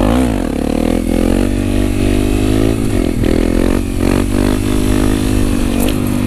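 Honda CRF250 supermoto's single-cylinder engine running hard through a Yoshimura exhaust, its pitch dipping and climbing several times as the throttle and gears change. The bike is down on power, which the rider believes is a fuel-system fault.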